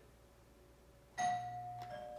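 A doorbell chime rings once about a second in: a single steady ringing tone that fades slowly.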